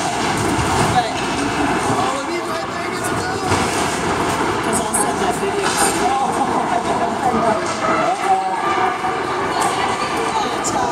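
Ice hockey game noise: spectators chattering, with skates scraping and sticks clacking on the ice as players battle for the puck.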